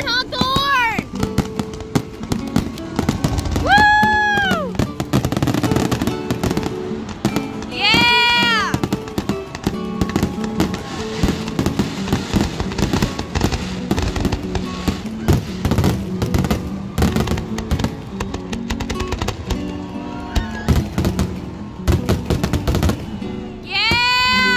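Aerial fireworks bursting in a rapid string of sharp bangs and crackles, with music playing underneath. A few short high-pitched sounds that rise and fall in pitch come about every four seconds.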